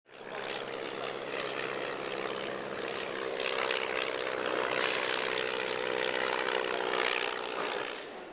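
A steady mechanical drone with a low hum, like a propeller aircraft's engine running, fading in at the start.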